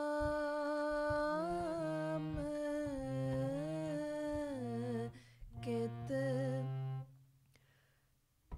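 A voice humming a kirtan melody with a harmonium, holding notes and gliding between them. The sound stops about seven seconds in.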